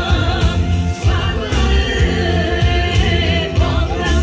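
Live Bulgarian folk song played loud through a stage sound system: a lead singer with several voices joining in over a band, driven by a steady heavy bass beat.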